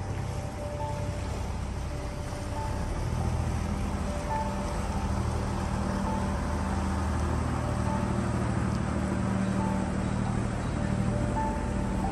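A boat engine running steadily over the wash of canal water, its low hum growing a little louder from about three seconds in as a motor work boat passes close. Soft background music plays faintly underneath.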